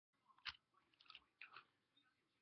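Near silence with a few soft clicks, the loudest about half a second in and a small cluster around a second and a half.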